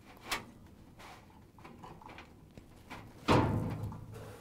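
Hands working a dryer's rubber drive belt onto the motor pulley against the spring-loaded idler pulley. There is a light click just after the start, soft handling noise, then a louder clunk and rattle lasting about half a second near the end.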